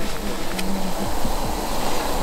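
Lumpia sizzling steadily as they fry in hot oil in a skillet on a propane camp stove.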